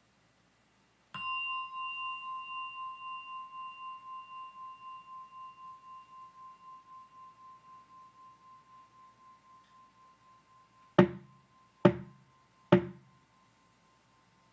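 A meditation bell of the singing-bowl kind struck once, ringing with a clear, high tone that pulses slowly as it fades over about ten seconds. Near the end come three sharp knocks, a little under a second apart.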